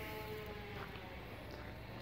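Quiet outdoor background with a faint low, steady hum and no distinct sound event.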